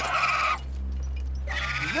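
A young dragon's shrill, fluttering screech that cuts off about half a second in, followed by a low steady drone.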